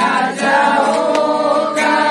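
A congregation of men, women and children singing together in chorus, holding long notes. The pitch moves to new notes about half a second in and again near the end.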